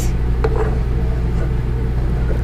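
A steady low mechanical hum runs throughout. Over it, a spatula stirs broth in an electric skillet, with a light tap against the pan about half a second in.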